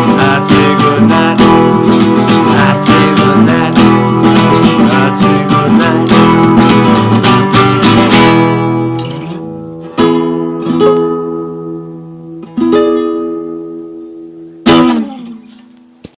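Acoustic guitar strummed steadily and fast for about eight seconds as the song's closing. It then gives four single chords, each left to ring out and fade.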